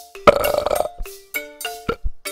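A loud burp lasting a little over half a second, starting about a quarter second in, over music of marimba-like mallet notes struck about three times a second.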